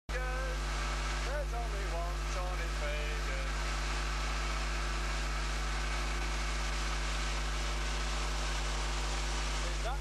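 Tow boat's engine running steadily at speed, with a constant rushing hiss of wake and wind over it. A voice is heard briefly during the first three seconds.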